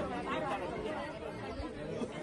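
Several people talking at once in the background, their voices overlapping in unintelligible chatter.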